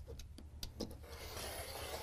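Rotary cutter blade rolling through a fabric strip along an acrylic ruler on a cutting mat: a faint rasp that grows about a second in.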